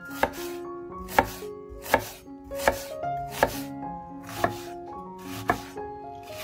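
Chef's knife chopping an onion on a wooden cutting board: about seven separate cuts, roughly one a second, each ending in a sharp knock of the blade on the wood.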